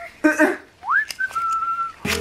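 Someone whistling: a quick rising note, then one steady held note.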